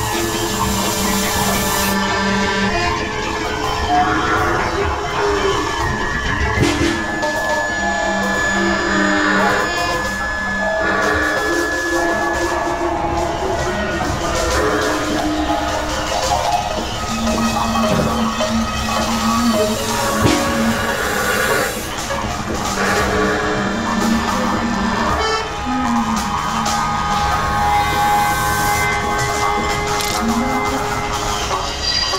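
Avant-garde industrial jazz music: dense layers of held tones and low sustained notes, with clattering, knocking noises throughout.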